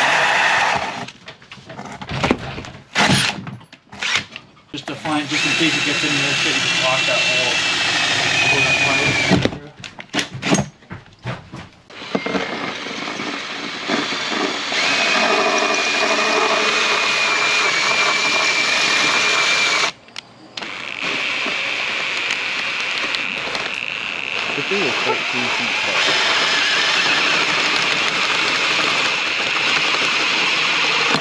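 Cordless drill spinning a bi-metal hole saw through the aluminum wall of a trailer, a steady grinding cut with a thin high whine. It runs in three long stretches with short stops between them, after a few short bursts at the start.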